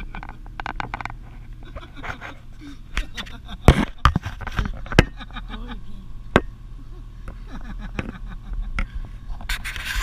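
Vehicle engine idling as a steady low hum, with a handful of sharp knocks and clattering from the camera being handled and repositioned, the loudest knocks about four and five seconds in.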